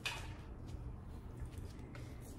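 Quiet room tone with a steady low hum and a few faint soft rustles and small taps of hands handling things on a table.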